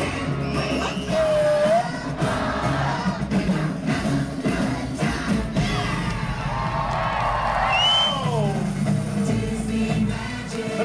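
Music with singing at a live stage show, with a large crowd cheering over it.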